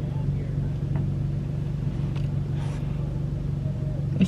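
A car engine idling, heard from inside the cabin as a steady low hum. There is a faint click about a second in.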